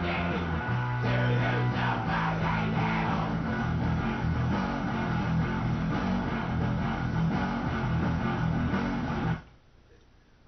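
A black metal band's recording, with distorted electric guitar and bass, plays back loudly over studio monitors and stops abruptly near the end.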